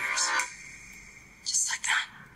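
Two short whispered, breathy bursts of a person's voice, one at the start and one about a second and a half in, with a faint steady high tone in the quieter gap between them.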